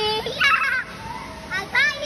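Children's high-pitched squeals and calls while playing, with no clear words: a short burst about half a second in and a rising squeal near the end.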